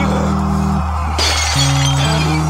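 Melodic death metal band playing: distorted electric guitars and bass holding sustained low chords that change twice, with a bright cymbal crash a little over a second in.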